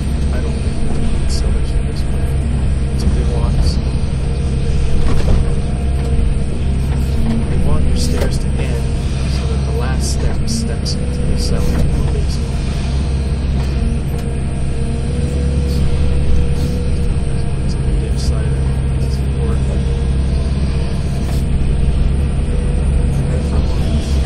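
Excavator diesel engine running steadily under load, with a wavering hydraulic whine, heard from inside the cab. The bucket scrapes and knocks against rocky, frozen soil while digging a ditch, giving scattered sharp clicks.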